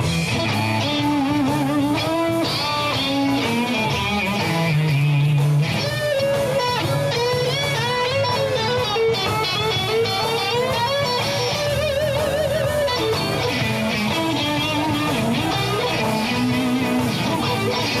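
Live blues band playing an instrumental passage: an electric guitar lead with bent notes and wide vibrato over bass and drums.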